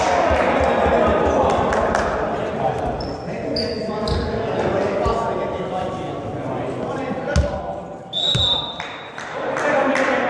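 Volleyball bouncing on a sports hall floor, two firm thumps in the second half, among echoing players' voices and short high squeaks.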